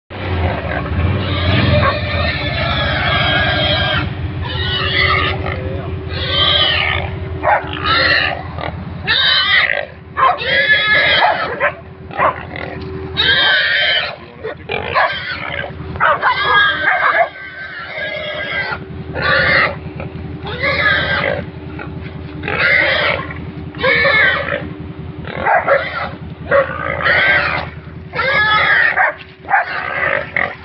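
A pig squealing loudly again and again, in cries of about a second each, while hunting dogs hold it.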